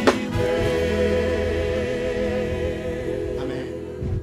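Gospel choir singing with electric band accompaniment, holding one long chord after a sharp hit at the start. The chord fades away near the end.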